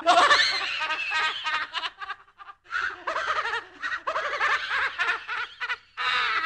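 A spooky horror-film-style laugh sound effect: a voice laughing in quick, pitch-gliding bursts, breaking off briefly about two seconds in and then laughing again.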